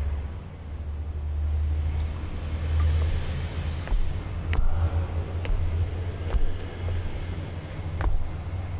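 A low, steady rumbling drone, with a hissing whoosh that swells and fades about three seconds in and a few sharp clicks after it. It plays as a sound effect for a supernatural power being worked.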